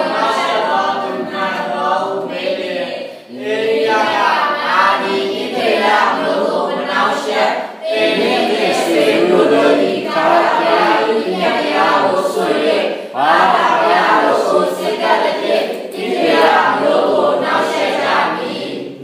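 Many voices of a congregation together in unison, going in phrases of a few seconds with short breaks between them.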